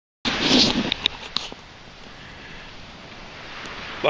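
A short loud noisy burst and a few sharp handling clicks near the start, then a steady even hiss of wind and surf at the beach.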